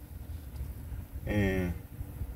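A man makes one brief wordless voiced sound about a second and a half in, lasting about half a second, over a steady low rumble.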